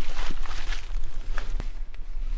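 Footsteps and rustling in dry fallen leaves, with a few sharp clicks from handling, over a steady low rumble on the microphone.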